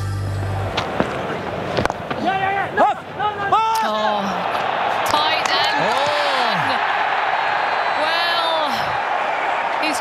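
A short music sting ends in the first second. Then comes cricket-ground sound: a couple of sharp knocks, players' shouts rising and falling, and a crowd roar that swells about halfway through as the stumps are broken for a run-out.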